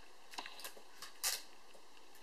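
A few faint small clicks and handling sounds as a micro-USB plug is pushed into the charging port of a Motorola Droid phone, the loudest a little past the middle.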